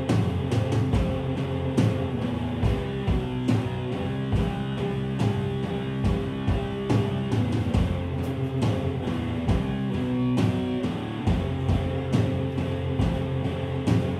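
Live rock band playing, electric guitar with bass and a drum kit beating steadily.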